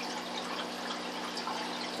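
Aquarium filter outflow splashing and trickling into the tank, a steady running-water sound with a faint steady hum underneath.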